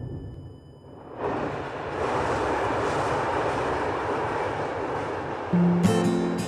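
Steady rushing travel noise of a moving passenger train, starting suddenly about a second in. Strummed acoustic guitar music comes in near the end.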